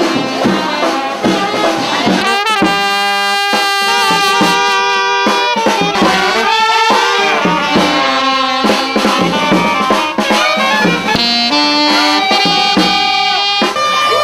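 A funeral brass band playing a slow melody in held horn notes over bass drum beats.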